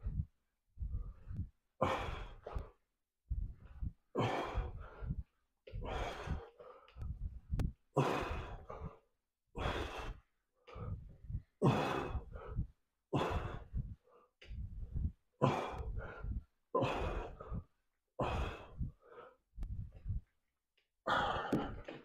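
A man breathing hard in and out in a steady rhythm, roughly one breath a second, from the exertion of a set of inverted pull-ups on a chain-hung bar.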